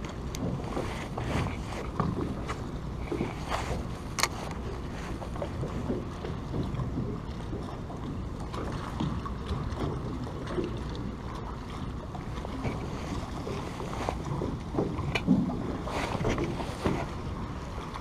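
Water lapping against the hull of a small boat over a steady low rumble, with a few light knocks, one about four seconds in and more near the end.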